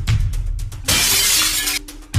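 Glass shattering, a crash of about a second starting about a second in, over background music with a steady beat.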